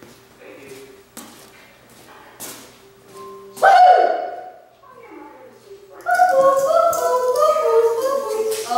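A person's sing-song voice: a loud held note about three and a half seconds in, then a run of stepping notes like a short tune in the last two seconds, with a few faint taps before it.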